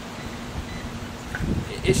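Low, even outdoor background noise with a faint steady hum. A man's voice starts near the end.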